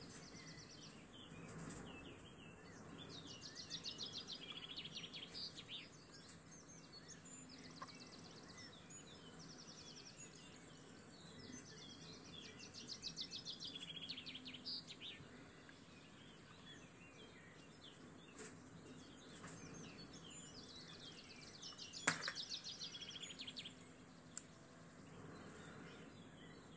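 Faint songbird song: fast trilled phrases a few seconds long, recurring every several seconds over a steady background hiss. Two sharp clicks come near the end.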